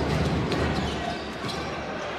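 A basketball bouncing on a hardwood court, a few bounces in quick succession, over the steady noise of an arena crowd.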